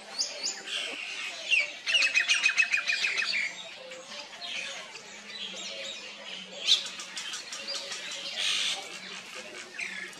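Several wild birds chirping and whistling, with a fast, even trill of about ten notes a second from about two seconds in, and a sharp single chirp near the seven-second mark.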